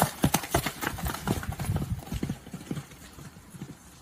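Hoofbeats of horses running off across soft, muddy ground: a quick run of thuds that fades after about two seconds as they move away.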